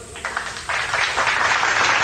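A steady hiss of noise that begins just under a second in and holds evenly.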